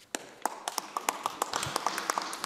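Scattered applause from a small number of people: irregular, sharp hand claps, several a second, starting just after the start and carrying on throughout.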